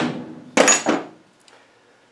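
Hammer blows on a driver seated in a seized, rounded-off Torx screw on a Rover V8 starter motor: the tail of one blow fades at the start, and one more sharp blow with a brief metallic ring comes about half a second in.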